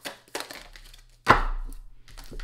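Tarot cards being shuffled by hand: a quick run of crisp card clicks, then a louder slap about a second and a quarter in as cards hit the table.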